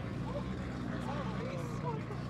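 A car engine idling steadily close by, with people talking in the background.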